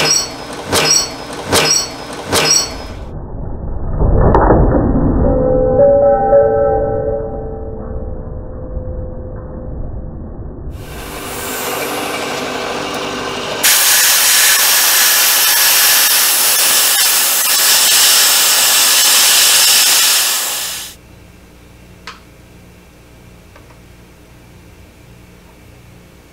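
Milling machine cutting a metal block with an end mill, in cut-together passages. It opens with a few sharp knocks about two-thirds of a second apart, then a dull rumbling cut with some steady tones. A long, steady hiss follows and stops suddenly about three seconds before the end.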